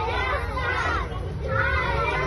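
Young children chattering and calling out as they walk together, their high voices overlapping, over a steady low street rumble.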